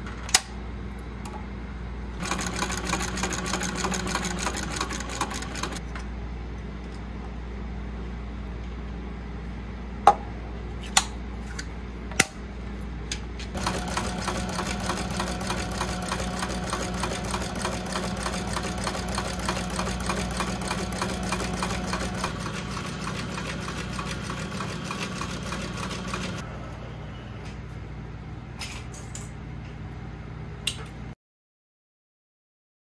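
Cylinder-arm leather sewing machine stitching in two runs of fast, even strokes, a short one of about four seconds and a longer one of about thirteen, stitching a bag seam through one and two layers of leather. A few sharp clicks come between the runs.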